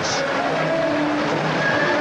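Football stadium crowd noise: a steady wash of many voices from the stands, with a few faint held tones in it.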